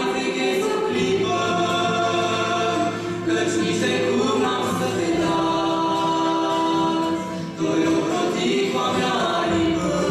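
A female and a male voice singing a Christian song together in Romanian over acoustic guitar, with one long held note in the middle.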